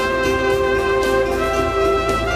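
Trumpet playing slow, long held notes over a sustained orchestral backing and a low drone; the melody steps to a new note about one and a half seconds in.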